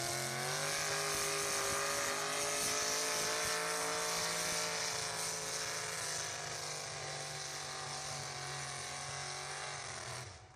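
Small-block V8 of a 4x4 pulling truck running hard at high revs under load as it drags a weight-transfer sled. The pitch climbs in the first second, holds, then slowly sags over the second half as the load builds.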